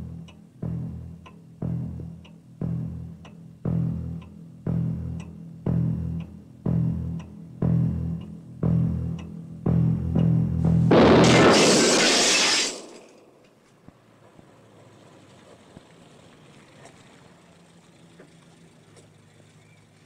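Tense film-score pulse: a low bass note struck about once a second with a light tick on each beat, then a sudden loud crash about eleven seconds in that lasts under two seconds.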